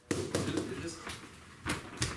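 A few sharp knocks from two fighters stick sparring in a small padded gym: two light ones near the start and a louder one a second and a half later, with low room noise between.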